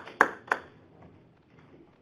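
Scattered hand claps from a small audience dying away: three last claps in the first half second, then a quiet room.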